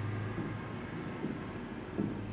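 Marker pen writing on a board, a run of short strokes as letters are formed, over a steady low hum.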